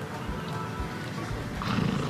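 Horse moving on grass turf with soft hoofbeats, and a louder horse snort near the end, over background music with a steady beat.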